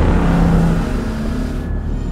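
Explosion sound effect of an animated logo intro: the loud, fading tail of the blast, a dense roar of noise with a low rumble whose hiss cuts off near the end, over a dark, low, sustained music drone.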